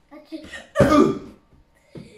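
Short vocal bursts without clear words, the loudest about a second in.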